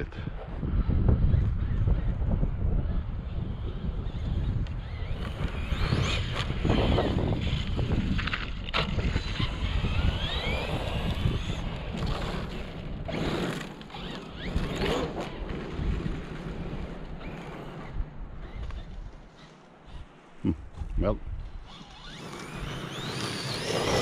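Wind buffeting the microphone, with the faint rising and falling whine of a Traxxas Sledge RC monster truck's brushless motor as it is driven over gravel.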